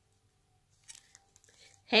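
Faint rustling and small clicks of a clear plastic package being handled, starting about a second in, then a woman's voice begins reading aloud at the very end.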